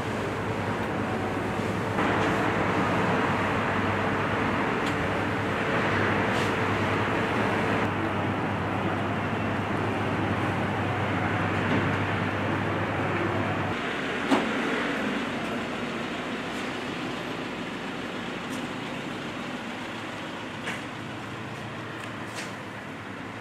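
A vehicle engine idling steadily over outdoor traffic noise; its low hum cuts off about fourteen seconds in, followed by a single sharp click, leaving quieter street noise.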